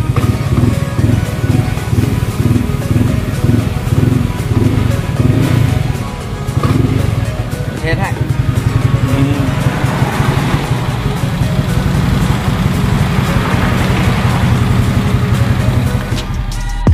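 Motorcycle engine idling steadily at about 1350 rpm, with music playing over it.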